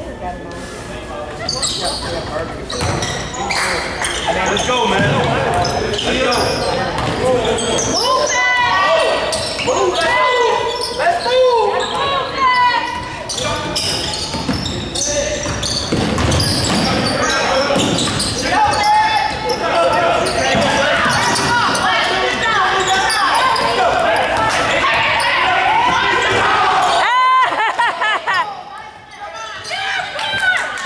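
Basketball game sounds in a large gymnasium: a ball bouncing on the hardwood court amid the voices of players and spectators, echoing in the hall.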